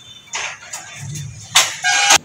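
A loud, brief bird call near the end, with a fainter noisy sound shortly after the start.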